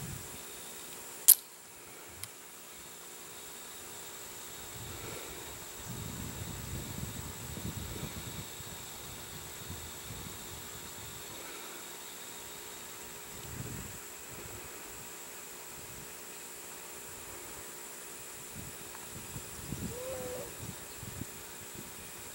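A single sharp snap about a second in as the elastic-launched glider is released from its rubber band. After it, a steady high insect drone, with low wind rumbles on the microphone now and then.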